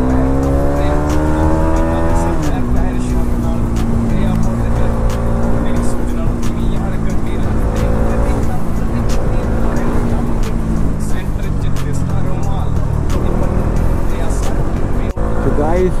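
Motorcycle engine heard from the rider's seat, with wind noise on the microphone. It revs up, rising in pitch for about two and a half seconds, drops on an upshift, then holds a steady lower note while cruising.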